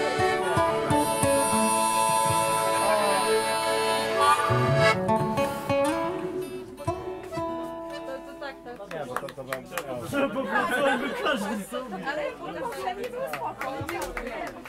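Harmonica, accordion, acoustic guitar and a low bowed string instrument holding the last chord of a folk tune, with a low note sliding upward about five seconds in; the music dies away by about seven seconds, and low voices chatter after it.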